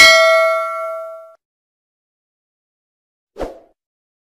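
Notification-bell 'ding' sound effect of a subscribe-button animation: a bright chime of several ringing tones that fades out over about a second and a half. A brief, softer sound follows about three and a half seconds in.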